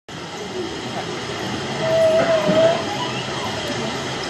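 Murmur of voices over a steady hiss, with a single held, slightly wavering tone about two seconds in, lasting about a second.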